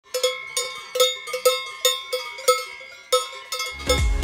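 Cowbells on grazing alpine cows clanging irregularly, two or three strikes a second, each left ringing. Music with a heavy bass beat comes in just before the end.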